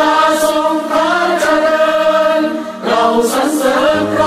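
A choir singing a slow melody in long held notes, with a short break about three seconds in.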